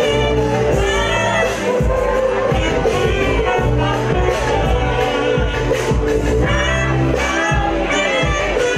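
Loud club music: a backing track with a heavy bass beat, with a live saxophone playing a melody over it.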